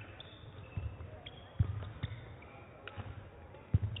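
Thuds of players' feet landing on a badminton court, the two loudest about a second and a half in and just before the end, with a few sharper clicks between them from racket strikes on the shuttlecock.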